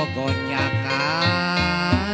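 Sundanese kacapi zither being plucked under a sung pantun vocal line whose pitch slides up and down over held low notes.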